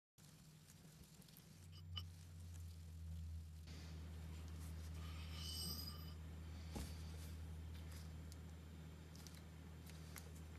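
Faint gritty scraping of a steel taper arbor coated in diamond paste being worked by hand inside the spindle's #9 Brown & Sharpe taper bore, lapping off surface rust and high spots. A steady low hum runs underneath, with a couple of light knocks.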